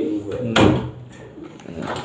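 The tail of a low voice, then a single sharp knock about half a second in.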